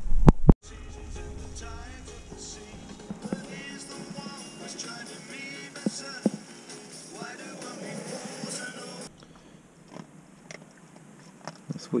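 A loud knock of the camera being handled, then music with wavering melodic lines that cuts off abruptly about nine seconds in, leaving a quieter stretch.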